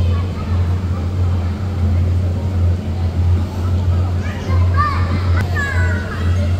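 Steady low hum of an inflatable bounce house's electric air blower, with children's high voices and squeals in the last couple of seconds.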